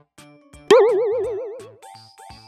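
Light background music with a comic cartoon 'boing' sound effect laid over it: a loud wobbling tone that comes in suddenly about two-thirds of a second in and dies away over about a second.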